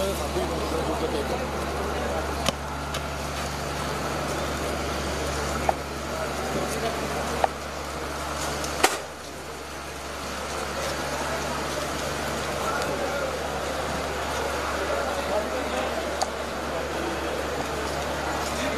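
Indistinct voices of people walking together in a group, with no clear words, over a steady low hum. A few sharp clicks sound through it, and the hum drops about nine seconds in.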